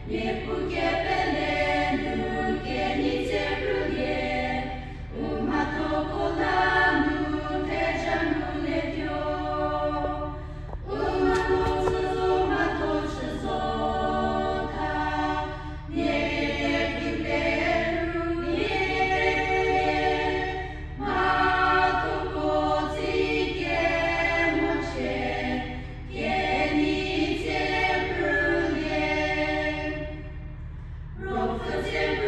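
A group of voices singing a hymn together in phrases of about five seconds, with short breaks for breath between them, over a steady low hum.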